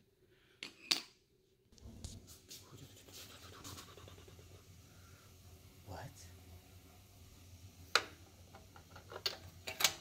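Faint clicks and scrapes of a long magnetic spark plug socket on its extension being handled and seated onto a spark plug, with a low steady hum that starts about two seconds in and sharper clicks near the end.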